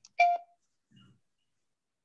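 A short electronic beep from a computer, lasting about a quarter of a second, a few tenths of a second in; it is taken for a Skype incoming-call alert.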